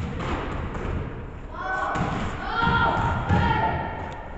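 Basketball bouncing on a hardwood gym floor: a few thuds, echoing in the large hall.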